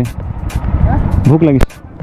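Low rumble of motorcycle engines running at low speed, with wind on the microphone; a brief voice comes in about a second and a half in. Near the end a click is followed by a sudden drop to a much quieter background.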